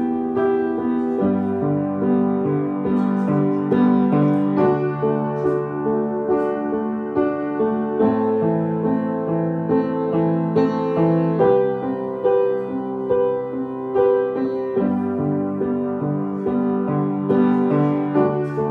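1928 Mason & Hamlin Model T grand piano played with both hands: a continuous flow of sustained chords under a melody, the notes ringing into each other.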